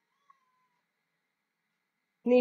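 Near silence: room tone, with a very faint, brief thin tone that glides slightly upward and fades out within the first second.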